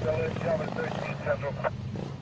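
Motorcade vehicle engines running steadily, including police motorcycles, with short indistinct voices over them in the first second and a half.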